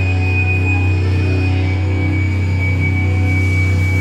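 A live band's amplified electric guitars and bass hold a low, sustained, unchanging note, with a thin high steady whine ringing above it.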